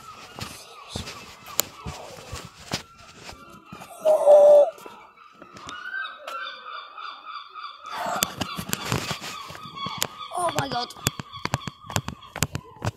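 Clicks and rubbing of a phone being handled close to its microphone, with a short loud pitched sound about four seconds in.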